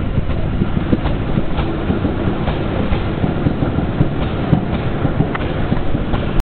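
Go-kart's small engine running as a steady low rumble, mixed with rapid irregular knocks and rubbing as the handheld camera jostles against clothing.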